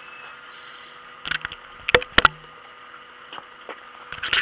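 Steady background hum with a brief clatter a little over a second in, then two sharp knocks a quarter-second apart around two seconds in.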